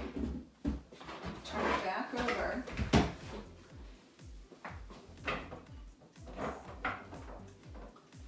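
Black plastic storage tote being turned over and set down on a shelf: a series of plastic knocks and thumps, the loudest about three seconds in, over background music with a steady low beat.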